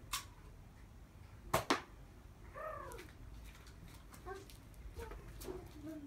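Sharp plastic clicks and snaps from a toy Nerf blaster being handled and fired, the loudest a quick pair about a second and a half in. A short pitched call rises and falls a second later, with a few fainter clicks near the end.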